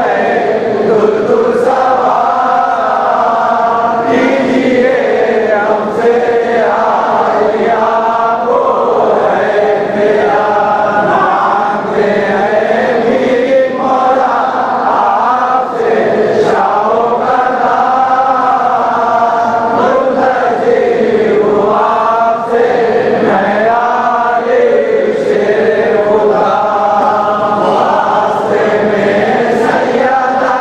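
Male voices chanting a munajat, a Shia devotional supplication, in long, continuous melodic phrases.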